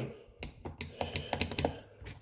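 Plastic push buttons on a Surecom SW-102 SWR meter clicking in a quick, uneven series as a gloved finger presses them again and again. The meter is dead and does not power on.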